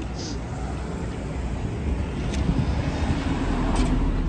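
City street traffic noise, with a yellow taxi van driving past close by; the low rumble grows a little louder toward the end.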